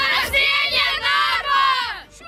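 A group of children shouting and cheering together, several high voices overlapping in drawn-out shouts.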